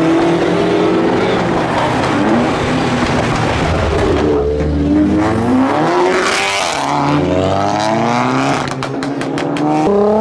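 Modified car engines revving hard as cars pull away, the pitch climbing and dropping with each rev. One car passes close about six seconds in, and a quick run of sharp pops comes near the end.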